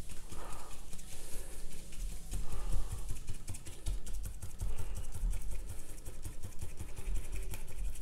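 A fan brush dabbing dark paint onto watercolor paper, a quick irregular run of soft taps as the foliage is stippled.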